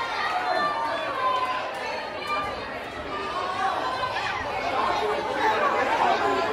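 Many people talking at once in a large hall: overlapping, indistinct crowd chatter with no single voice standing out.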